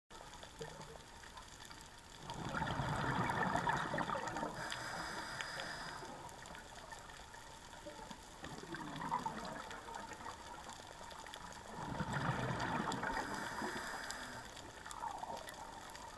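Scuba diver's exhaled bubbles rushing from the regulator underwater, in two bursts of a few seconds each, about two seconds in and again about twelve seconds in, with quieter underwater hiss between them.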